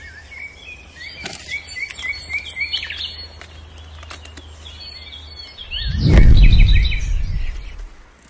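Small birds chirping in quick repeated series. About six seconds in, a loud low rumble lasting over a second covers them.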